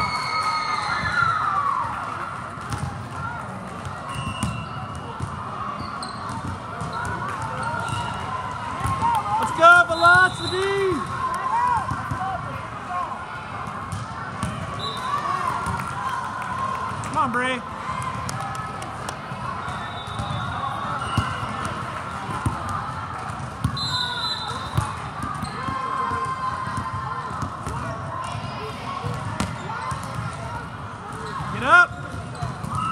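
Volleyballs being struck and bouncing on a hard court floor amid a steady hubbub of crowd chatter and shouting in a busy tournament hall. Sharp shoe squeaks on the court come in bursts, loudest about ten seconds in and again a little past the middle.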